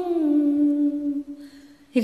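A woman singing unaccompanied, holding a long note at the end of a phrase; it dips slightly in pitch, stays level, then fades out about a second and a half in. After a short pause the next sung phrase begins right at the end.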